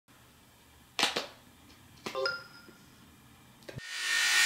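Two pairs of sharp clicks, about a second apart. The second pair rings briefly with a few thin tones. A rising rush of sound begins just before the end.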